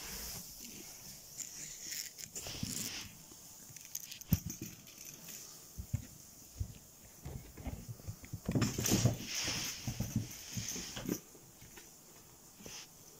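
A house cat playing on the floor: scattered taps, bumps and scuffles, with a louder stretch of scuffling about nine seconds in.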